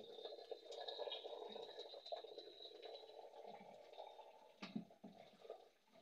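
Faint, steady watery splashing from a metal cooking pot being handled, with small ticks through it, tailing off near the end.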